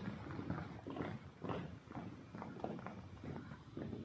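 Light, irregular clicks and knocks, about three a second, from hands working at a flat knitting machine's metal needle bed, pushing a needle while setting the needle position during a racking-position correction.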